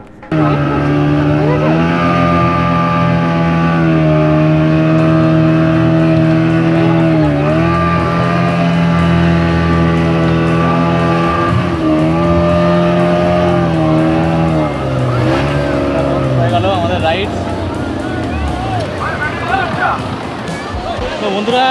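Outboard motor of an inflatable speedboat running at steady high revs, with a few brief dips in pitch, then throttling back and falling in pitch about sixteen seconds in.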